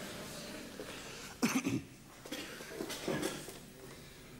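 A few coughs: the loudest about a second and a half in, with quieter ones after two seconds and around three seconds in.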